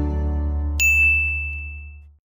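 A single bright 'ding' chime sound effect struck about a second in, ringing on one high tone and fading away. It plays over a held low note left from the closing music, and both cut off at the end.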